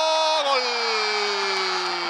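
A football commentator's long, drawn-out shout: one held note, falling slowly in pitch over about two seconds, as a goal goes in.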